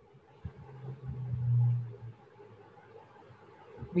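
A low rumble of background noise that swells to its loudest about a second and a half in and fades out by two seconds, with a few faint knocks.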